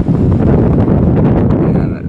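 Wind buffeting the microphone: a loud, steady low rumble.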